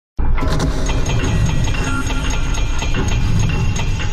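Sound effects for an animated logo intro: a loud, dense low rumble with rapid clattering impacts, starting abruptly just after the start, with a few steady ringing tones over it.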